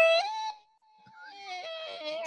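A person's high-pitched, drawn-out whine or squeal, sliding up at the start and then holding and slowly falling, fading in and out. It is either a squeaky laugh or a mock 'balloon losing air' sound.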